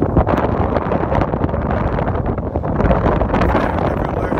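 Strong wind buffeting a phone's microphone: a loud, continuous, gusting rush heaviest in the low end, with a few brief crackles.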